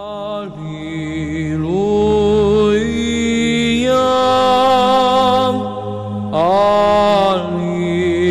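Sung religious chant: a voice drawing out long held notes that step from pitch to pitch over a low steady drone, with a brief break about six seconds in.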